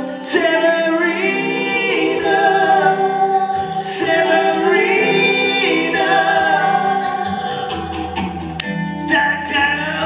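A man singing with an acoustic guitar accompaniment, live, holding long notes.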